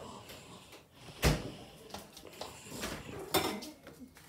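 Household handling noises: a few short, sharp knocks and clatters, the loudest about a second in and another near the end, with softer knocks between.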